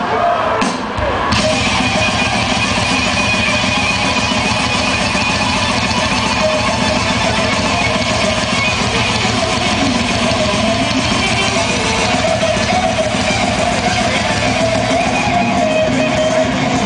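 Extreme metal band playing live, heard from within the crowd: heavily distorted electric guitars, bass and drums in a dense wall of sound. A couple of sharp hits open it, and the full band comes in about a second in.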